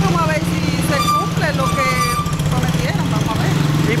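A motorcycle engine idling close by, a steady low throb, under the overlapping voices of people on the street.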